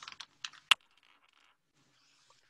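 A quick run of sharp computer clicks, about six in the first second with the last one the loudest, then only faint ticking.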